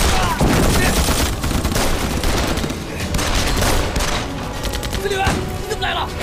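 Massed small-arms fire in a battle, rifles and machine guns: a continuous fusillade of overlapping shots that eases slightly midway and then picks up again.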